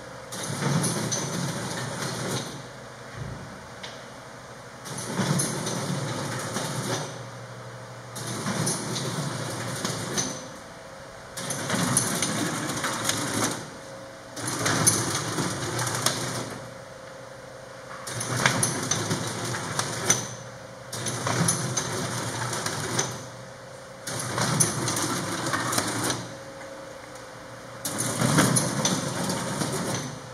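MBM Sprint 5000 booklet maker running through repeated cycles, one about every three seconds: each set of sheets is drawn in, stitched and folded into a booklet, giving about two seconds of mechanical running and clatter. A lower steady hum runs between cycles.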